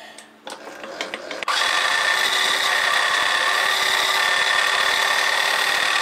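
Milling machine running a small end mill through an aluminium bar. The sound starts suddenly about a second and a half in and is loud and steady, with two high steady tones over a dense rushing noise. Before it, only faint clicks of handling.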